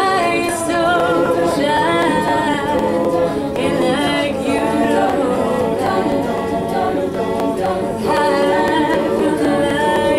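Live a cappella group singing: a female lead voice carries the melody over sustained close-harmony backing voices, with no instruments.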